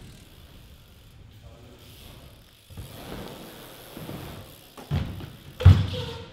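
BMX bike rolling on the ramps with its freewheel hub ticking, then two thuds near the end, the second the loudest.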